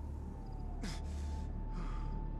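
A man gasping hard for breath twice, about a second apart, over a low steady drone.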